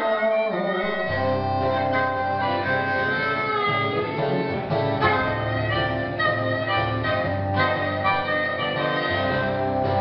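Live harmonica solo, long held notes over a strummed acoustic guitar, with no singing. The guitar's low end fills in about a second in.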